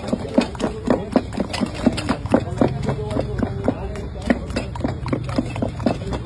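A steel spoon chopping and mashing spiced peas against a steel plate in quick, even strokes, about four clinks a second, the plate ringing briefly after each hit.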